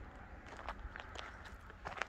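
Faint footsteps on a dirt and gravel track, several steps at an uneven walking pace.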